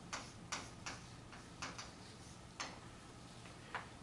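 Chalk striking and writing on a chalkboard: about eight short, faint clicks at irregular spacing as the strokes of a word go down.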